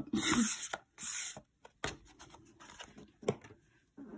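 Fingers scraping and sliding a flat paper scratch-off lottery ticket on a wooden tabletop while trying to lift it. The sound is a series of short scrapes and rubs, with a few sharp taps.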